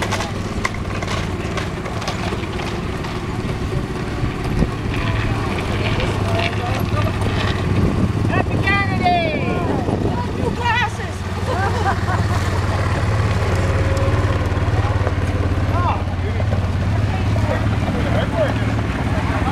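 All-terrain vehicle (quad) engine running at low speed as it rolls slowly past, a steady low hum, with people's voices calling and chattering over it.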